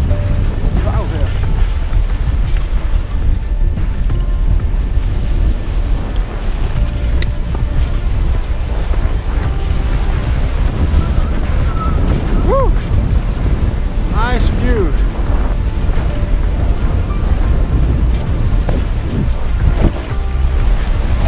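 Strong wind buffeting the microphone on the deck of a sailboat heeled in a gale, with the wash of breaking sea along the hull. A few short squeals that rise and fall sound a little past the middle.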